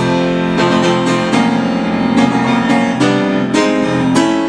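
Grand piano played solo: a string of full chords struck about every half second to a second, each ringing on into the next.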